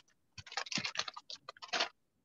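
A plastic sack rustling and crinkling in short, irregular bursts as hands work inside it.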